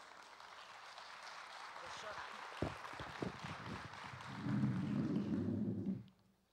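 Audience applauding, swelling over the first couple of seconds. A few knocks of a handheld microphone being handled come about halfway through, and a louder rumble of microphone handling noise fills the last second and a half as it is fitted into a table stand.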